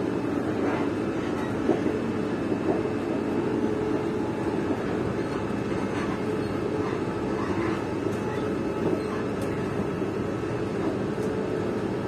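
Passenger train running, heard from inside the carriage: a steady rumble with a constant hum and a few faint clicks.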